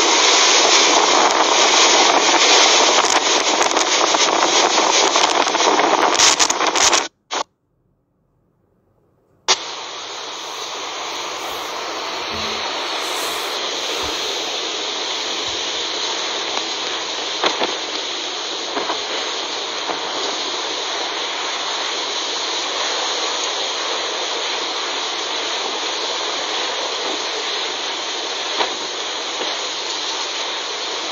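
Typhoon wind and driving rain: a loud, steady rushing noise. It cuts out for about two seconds about a quarter of the way in, then comes back a little quieter.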